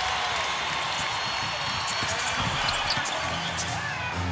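A basketball being dribbled on a hardwood court over the steady noise of an arena crowd.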